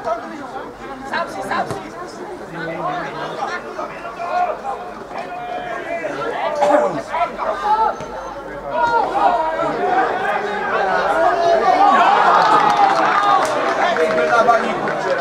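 Spectators' voices: several people talking and calling out at once near the pitch, with the voices growing louder and more crowded in the last few seconds.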